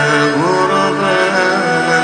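Music with a male voice singing a chant-like melody: long held notes that slide up and down in pitch, with no break in the sound.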